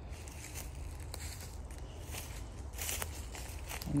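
Footsteps on dry leaf litter, a soft step roughly every second, over a steady low rumble on the phone microphone.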